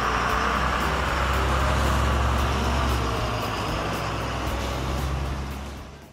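A bus engine running steadily with a low rumble, dubbed in for a toy school bus on the move, fading out near the end.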